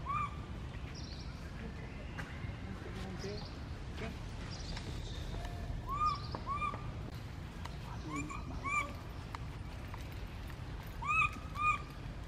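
Baby macaque giving short, high-pitched cries that each rise and fall, mostly in pairs: once at the start, then about six, eight and eleven seconds in. The title frames them as cries for its mother.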